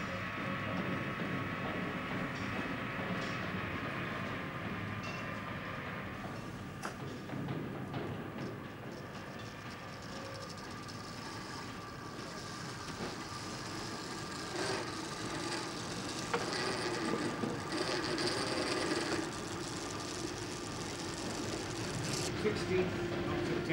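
Workshop machine tools running, a lathe among them: a steady mechanical whirr and clatter, with a few sharp knocks in the second half.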